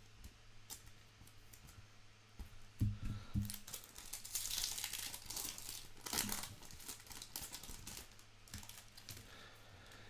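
Topps Chrome baseball card pack wrapper being torn and peeled open by hand, crinkling from about four seconds in until shortly before the end. A few soft thumps come about three seconds in, before the crinkling starts.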